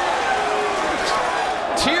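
Arena crowd at a boxing match: a steady din of many indistinct voices and shouts, with a brief sharp knock near the end.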